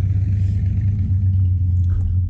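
A steady low hum runs throughout, with faint rustling from the plastic blaster being handled. No distinct click of the catch stands out.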